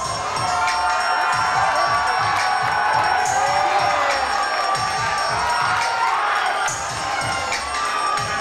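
Audience cheering, whooping and shouting over music with a steady beat.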